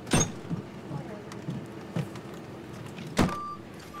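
Emergency vehicles idling with sharp metal clunks from the back of an ambulance as crews load a patient stretcher, the loudest clunk right at the start. A short electronic beep sounds near the end.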